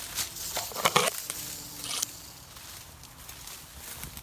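Dry brush and twigs crackling and snapping as branches are pushed aside and prodded with a stick, with a cluster of sharp snaps about a second in and another near two seconds.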